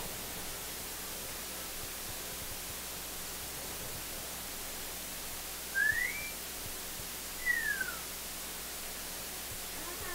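Steady hiss with two short whistled notes about a second and a half apart, the first rising and the second falling.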